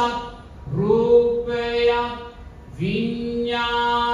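Buddhist chanting: voices singing long, drawn-out held notes, each beginning with a short upward slide in pitch, about one note every second and a half.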